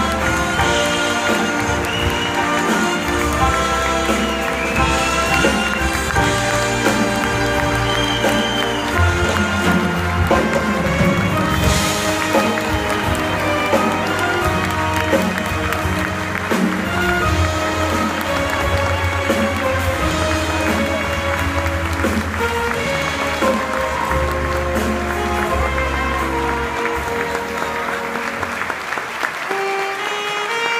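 Orchestra of violins, saxophones, flute, drum kit, double bass and piano playing instrumental music with no singer, with audience applause over it.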